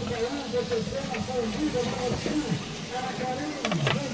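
Indistinct chatter of several people talking in the background over a steady hiss, with a single knock at the very start.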